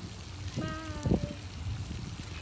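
Steady hiss of a pond fountain spraying, with wind rumbling on the microphone. About halfway through comes a brief held vocal note, like a hum, and a thump.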